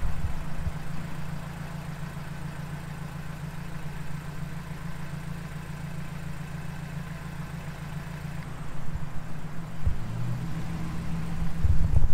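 A Mazdaspeed 3's turbocharged 2.3-litre four-cylinder engine idling with a steady low hum. There are a few low bumps near the end.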